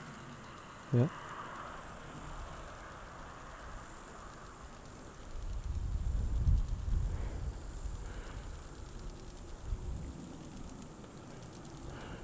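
Faint outdoor background with a steady high hiss; about five seconds in, a low rumble rises for about three seconds and fades.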